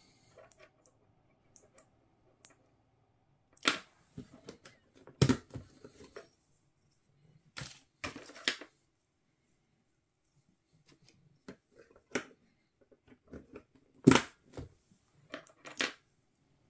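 RAM sticks being pulled from and pushed into a desktop motherboard's memory slots, with about seven sharp plastic clicks and snaps from the slots' retaining clips and quieter handling noise between them.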